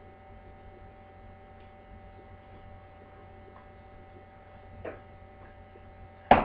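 Steady low electrical hum, with a few faint clicks and one sharper click just before the end.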